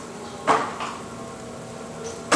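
Electric potter's wheel humming steadily as it turns a clay piece. About half a second in comes a sharp knock, then a lighter one just after, from hands striking the clay on the wheel.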